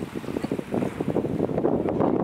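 Wind blowing across the microphone, a rough, uneven noise that grows louder about halfway through.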